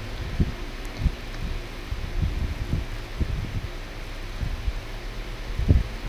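Spring roll pastry being rolled up by hand on a plate: faint rustling with scattered soft low bumps, one a little louder near the end.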